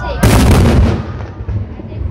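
A firework shell bursting with one loud boom about a quarter second in, its report rolling on and fading over most of a second.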